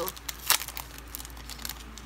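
Clear plastic sleeve of a sticker pack crinkling and crackling as it is handled, with one sharp crackle about half a second in.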